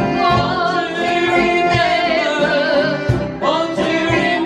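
A woman singing a ballad with a wavering vibrato on held notes, over strummed banjo and guitars.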